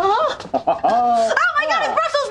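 A man and a woman crying out in wavering, drawn-out sounds of disgust, overlapping in the second half, recoiling from the smell of stinky Brussels sprouts.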